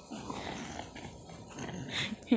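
English bulldog breathing noisily, with a run of short, rough grunts and snuffles that get louder near the end.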